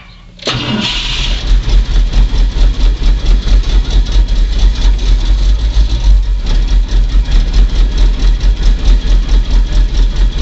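1970 Ford F250's 360 cubic-inch V8 on a cold start: after a brief quiet moment it catches about half a second in, then runs with an even, pulsing beat.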